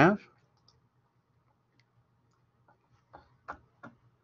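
Near silence, then three short, light clicks a little after three seconds in, from someone working a computer's keyboard or mouse.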